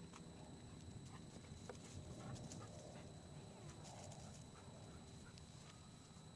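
Faint outdoor ambience: a low rumble of wind on the microphone, a steady high-pitched whine from the recorder, and scattered light ticks.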